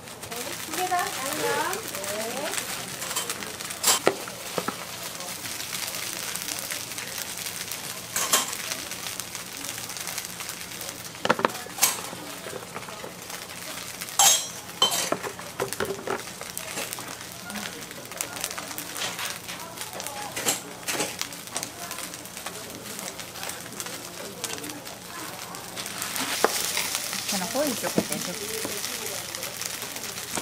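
Food sizzling as it fries on a street-stall cooktop, with sharp clinks of metal cooking utensils several times.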